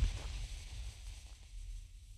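Faint steady wind rumble on the microphone with a faint, fading hiss while the lit fuse of a black-powder cannon cracker burns down, and a small knock right at the start.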